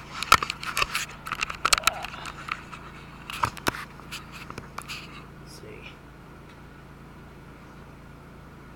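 Handling noise of a camera being moved and set in place: a quick run of knocks, clicks and scrapes over the first five seconds, then only a steady low hum.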